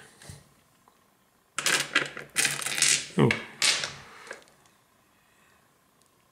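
Polished tumbled stones clicking and clattering against one another as a hand rummages through a pile of them, a run of quick clicks lasting about three seconds.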